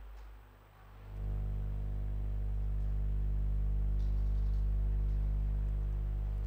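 A steady low hum with a stack of overtones. It sinks briefly, then rises about a second in and holds steady.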